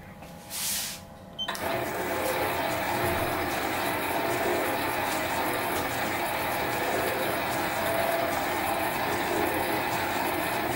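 Metal lathe switched on about one and a half seconds in and running steadily, spinning a model-engine flywheel held in a four-jaw chuck. A short noisy sound comes just before it starts.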